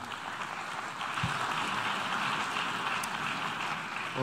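An audience of delegates applauding: steady clapping with no voices over it, growing a little louder about a second in and easing slightly toward the end.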